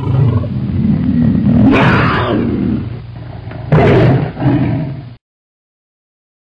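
A growling roar sound effect that swells to two loud peaks, near two and four seconds in, then cuts off suddenly a little after five seconds.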